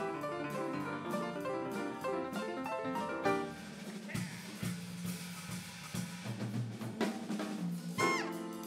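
Live jazz quartet of acoustic piano, electric bass and drum kit playing. Dense piano notes over bass and drums thin out about three seconds in, leaving mainly the electric bass line and the drum kit, with snare and cymbal work, for the rest.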